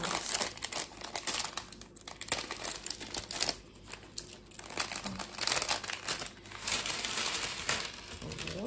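Clear plastic bag crinkling as small plastic Lego bricks are shaken out of it, the bricks clattering onto a wooden tabletop in bursts of clicks.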